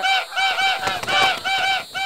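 A flock of geese honking: a rapid, overlapping run of short honks, about four a second.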